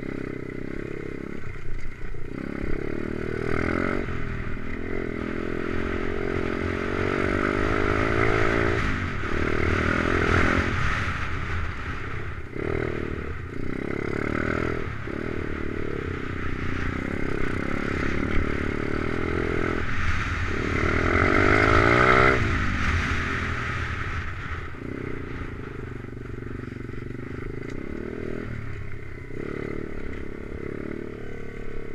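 Stomp pit bike's small single-cylinder four-stroke engine revving up and down as it is ridden off-road, the pitch climbing and falling with each burst of throttle. The revs climb highest about two-thirds of the way through, then ease off to a lower, steadier run near the end.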